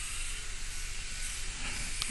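Steady background hiss from the recording, with a faint low hum beneath it.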